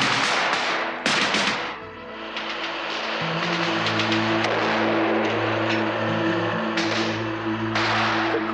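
Dramatic film score: sustained low chords swell in and hold after about two seconds. Before and over them come bursts of battle noise, with loud gunfire about a second in and a few more sharp shots near the end.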